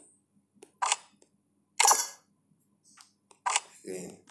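Phone chess app's piece-move sound effect: three short, sharp clacks about a second apart, with a few fainter taps between them.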